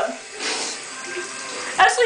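Water running from a bathtub faucet into the tub, a short rush of noise followed by a quieter steady flow, used to flush a spider toward the drain.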